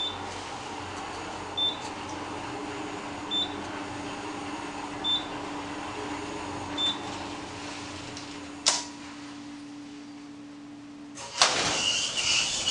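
Fujitec traction elevator car riding up with a steady hum. A short high beep sounds about every 1.7 seconds, five times, as floors pass. There is a click about 9 seconds in, the hum stops about 11 seconds in as the car arrives, and a louder rush of noise with a high tone follows as the doors open.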